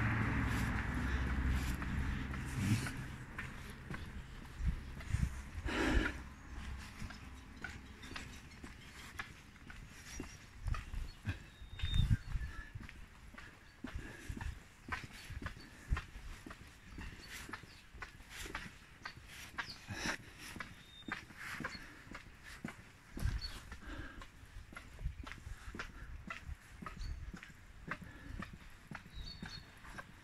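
Footsteps walking along a concrete path: a steady, irregular run of light knocks and scuffs.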